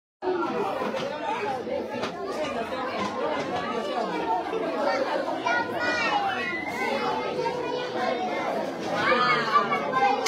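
Overlapping chatter of many voices, children's among them, at a steady level, with a few higher children's calls standing out near the middle and near the end.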